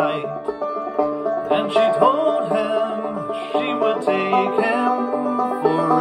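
Resonator banjo picked as accompaniment to a song, a steady run of plucked notes over held chords.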